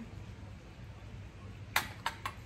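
Quiet room tone, then a metal teaspoon set down with a single sharp clink near the end.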